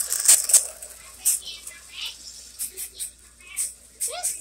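O gauge toy train cars clattering over three-rail tubular track as the train passes close by: a dense run of clicks and clacks in the first half second, thinning to scattered ticks as it moves away.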